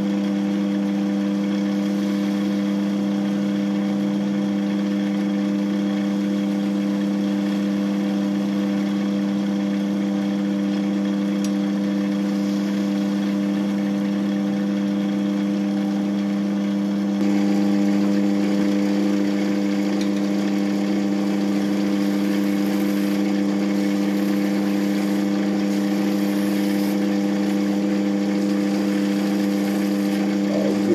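Woodturning lathe running with a steady, even hum as a hand-held turning tool shaves a spinning carrot. The hum gets slightly louder a little past halfway.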